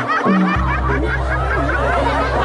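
Audience laughter over live stage music, with a low held note that shifts in pitch about half a second in.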